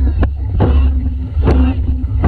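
Dragon boat crew paddling in time: paddles dig into the water in a steady stroke rhythm, a splashy burst a little more than once a second, over the rushing of water past the hull and heavy wind buffeting on the microphone.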